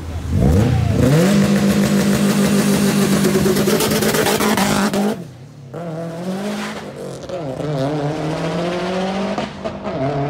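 A car engine revs up hard within the first second and holds at high revs for about four seconds, then cuts off abruptly. A second run follows, with the engine climbing again and holding high revs to the end.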